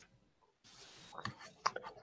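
A man's faint breath intake followed by a few soft mouth clicks just before he starts to speak.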